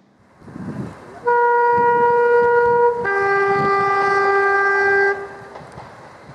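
First-generation diesel multiple unit sounding its two-tone horn: a higher note for nearly two seconds, then a lower note for about two seconds, which stops sharply. Underneath is the rumble of the approaching train.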